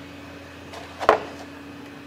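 A single sharp click about a second in, over a steady low hum in the shop.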